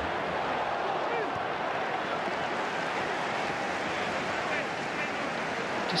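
Football match broadcast ambience: a steady wash of noise with faint, distant shouts.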